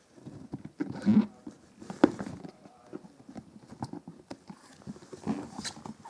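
A tight-fitting lid of a cardboard coffin-shaped box being worked at by hand, with irregular taps, knocks and scrapes of the cardboard as it refuses to open.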